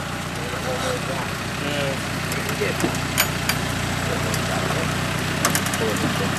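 Land Rover Discovery's engine running steadily as the stuck vehicle is recovered from a mud hole, with a few sharp clicks over it.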